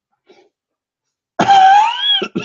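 A man's sudden loud vocal sound, cough-like, with a pitched tone that rises, starting about one and a half seconds in after a faint stretch.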